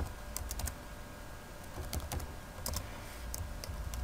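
Typing on a computer keyboard: a few short runs of quiet key clicks with pauses between them.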